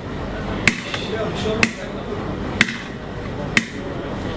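Turkish ice cream vendor's long metal paddle striking the metal rim and lids of the dondurma freezer, making four sharp ringing clangs about a second apart as part of the vendor's cone-teasing routine.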